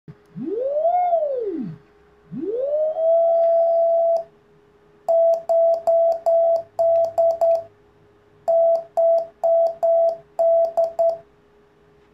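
Morse (CW) audio tone from a shortwave CW transceiver kit. The pitch first sweeps up and back down as the beat frequency is tuned, then rises and holds. It is then keyed on and off in dots and dashes at a steady pitch for about six seconds, with a click at each keying and a faint steady lower tone underneath.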